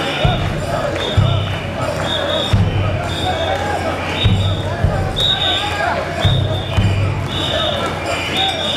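Mikoshi bearers chanting together in a dense crowd, with a short high whistle blast about once a second keeping the beat. Irregular low thuds sound beneath them.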